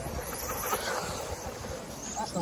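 Vintage 1/10 scale electric four-wheel-drive RC buggies running around the track, their motors whining faintly, with wind rumbling on the microphone.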